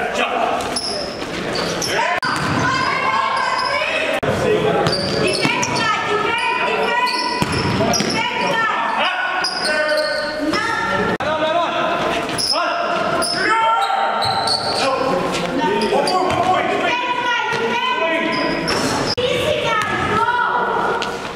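Live sound of an indoor basketball game: a basketball bouncing on the gym floor among players' voices, echoing in a large hall.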